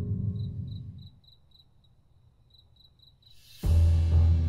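Crickets chirping as a night-time background effect: short high chirps about three times a second, over near silence. Background music fades out in the first second, and near the end a loud low drone comes in suddenly.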